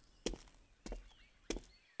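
Faint footstep sound effects: three soft, evenly spaced steps a little over half a second apart, as of someone walking up.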